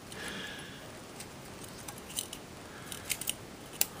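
Small sharp clicks of a camcorder's circuit-board parts being pried and pulled by hand, a handful of separate ticks spread out, the sharpest near the end.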